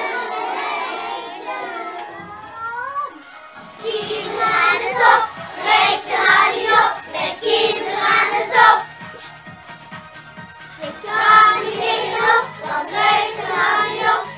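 A group of children singing a Dutch song with musical accompaniment. Long gliding sung notes come first; from about four seconds in, the singing turns rhythmic and syllabic, like a chorus.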